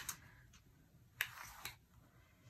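Faint handling sounds of a tape measure being laid along a fabric quilt block: three light clicks about half a second apart, with a brief rustle between the last two.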